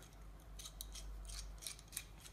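Faint metallic scraping and clicking of a small adjustable wrench's worm screw being turned to slide its jaw open and shut, in a string of short strokes starting about half a second in.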